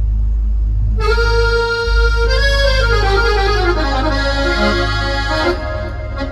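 A MainStage software tone played from a Yamaha PSR-SX arranger keyboard. A low bass note comes in just as the sound starts, and from about a second in a melody line plays over it.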